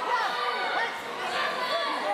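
Overlapping chatter of many voices in a sports hall, several people talking at once with no single voice standing out.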